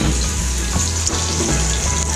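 Egg frying in hot oil in a wok: a steady sizzle.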